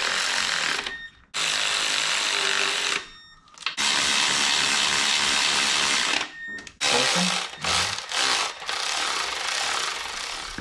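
Cordless electric ratchet running the supercharger flange bolts in on a Mini Cooper S R53 engine, in several runs of one to two and a half seconds with short pauses between them.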